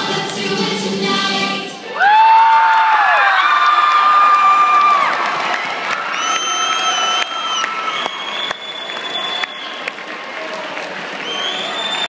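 The performance music ends about two seconds in, and a large crowd of students in a gym breaks into loud cheering, screaming and applause, with many long high-pitched cheers held over the noise. The cheering slowly gets quieter towards the end.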